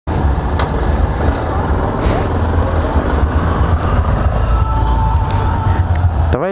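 Yamaha XTZ 250 Ténéré's single-cylinder engine running as the bike rolls slowly, heard as a steady low rumble mixed with traffic noise from the surrounding motorcycles.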